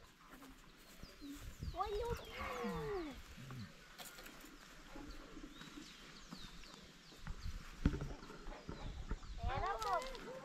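Cattle mooing: a long call that rises and then falls about two seconds in, and another shorter, wavering call near the end.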